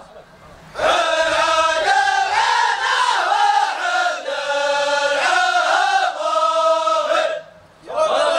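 A large group of men chanting in unison, a traditional Gulf wedding chant sung in long held notes. It starts about a second in and breaks off shortly before the end.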